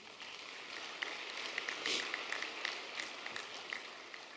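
An audience applauding, many hands clapping together; the applause swells about a second in and dies away near the end.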